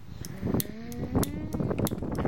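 Repeated sharp clicks of a cigarette lighter being flicked, several times a second, during tries to light a cigarette. In the middle, a person's long drawn-out vocal sound rises slowly in pitch.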